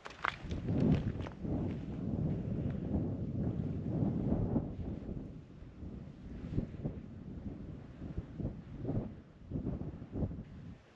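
Wind gusting over the microphone as an uneven low rumble, strongest in the first half, with a few footsteps scuffing on rock.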